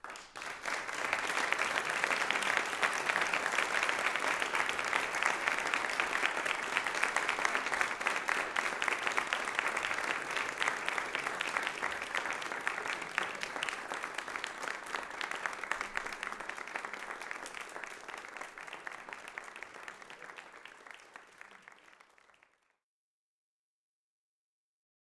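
Audience applause, many hands clapping: it breaks out suddenly, stays loud for about ten seconds, then slowly thins out and is cut off abruptly near the end.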